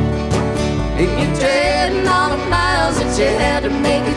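Country band playing live, with a steady beat.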